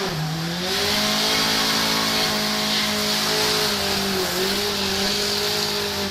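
Trials car's engine held at high revs as it claws up a muddy slope with the wheels spinning, its pitch dipping briefly near the start and again about four seconds in, with a hiss of spinning tyres over it.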